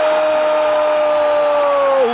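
A football commentator's long drawn-out cry of "gol", one held note sinking slowly in pitch and breaking off at the end, over the steady noise of a stadium crowd.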